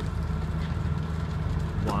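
Fire engine running steadily, a low drone with faint crackles over it.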